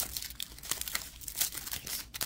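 Foil booster-pack wrapper of a Magic: The Gathering pack crinkling and tearing as the card stack is worked out of it, a quick irregular run of crackles; the cards sit very tightly wrapped inside.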